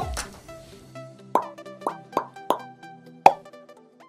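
Short musical outro sting: a few sharp, struck notes, about five over two seconds with the last the loudest, over held tones that fade out at the end.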